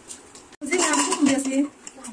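Dry popcorn kernels pattering into a metal pressure cooker pot as light, quick ticks. About half a second in, the sound cuts off suddenly and a person's voice follows for about a second, the loudest sound here.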